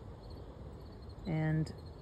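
Crickets chirping faintly in the background, a thin high note pulsing evenly, over a low outdoor background noise.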